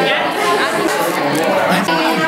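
Many people talking at once in a room: steady overlapping chatter with no single voice standing out.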